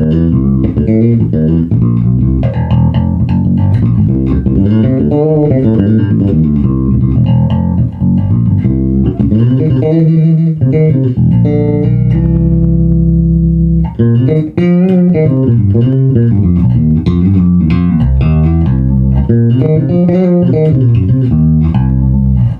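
Solo electric bass: a Gamma Jazz Bass with EMG jazz-bass pickups plays a continuous line of quick notes. Around the middle, one held note or chord rings for about two seconds before the line picks up again.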